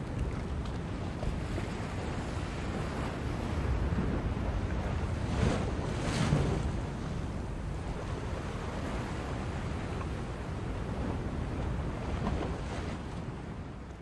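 Ocean surf: waves breaking and washing up onto a sandy beach in a steady rush, with the loudest breaks a little past the middle.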